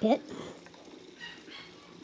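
A man's spoken word ends at the very start, then only faint, steady background hiss.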